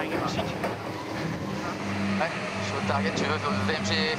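Onboard sound of an AC75 foiling race yacht under way: a steady rush of wind and water, with a low hum that comes and goes in segments.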